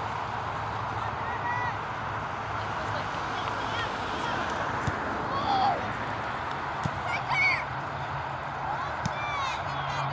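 Distant voices of players and spectators calling and shouting across an outdoor soccer field, over a steady background noise and low hum. The loudest shouts come about halfway through and again a couple of seconds later.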